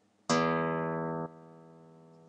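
Open low E string of a guitar plucked once. The note rings loud for about a second, is cut sharply by damping, and then fades.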